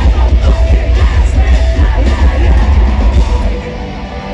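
Metalcore band playing live in an arena, recorded from the crowd: heavy drums and distorted guitars under the vocalist's voice. Near the end the full band drops out, leaving a quieter sustained ring.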